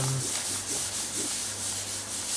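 A hand rubbing over a paper journal page, a steady dry rubbing hiss.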